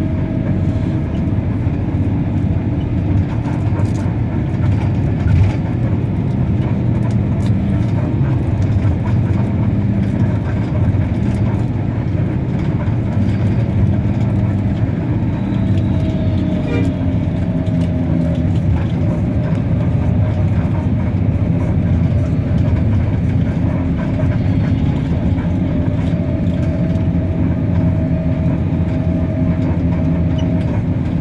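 Bus engine and tyre noise heard from inside the passenger cabin while driving, a steady rumble with an engine hum that rises and falls slightly in pitch.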